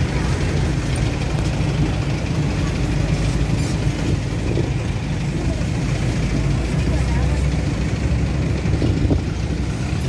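City street traffic: a steady low rumble of vehicle engines running and passing.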